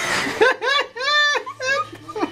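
People laughing: after a breathy burst at the start, a run of short, high-pitched laughs follows, a few each second.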